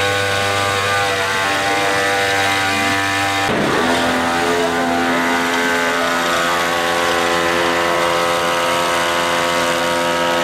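Small two-stroke engine of a backpack motorised sprayer running steadily at high speed while it sprays disinfectant. About three and a half seconds in, its pitch changes abruptly, then it holds steady again.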